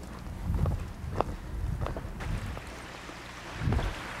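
Someone moving through brushy undergrowth: a few short sharp snaps of twigs or branches over an uneven low rumble of wind and handling on the microphone, which swells briefly near the end.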